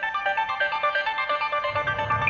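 Radio show's closing music starting suddenly: a quick run of bright, repeated notes, with a low bass part coming in near the end.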